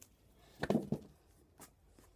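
Tennis rackets and bag being handled: a short cluster of knocks and rustles about two-thirds of a second in, then a single click.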